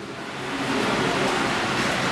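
Steady, even hiss of room noise, swelling over the first half-second and then holding level.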